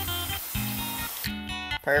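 Acoustic guitar background music over the hiss of a metal-cutting chop saw slotting a titanium scooter bar. The cutting hiss stops about a second in, as the slit is finished.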